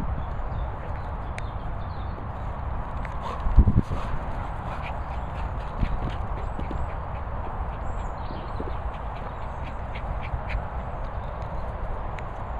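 Dogs running on grass close to the microphone: paws thudding on the turf and small sharp clicks, over a steady low rumble of wind on the microphone, with one loud bump about three and a half seconds in.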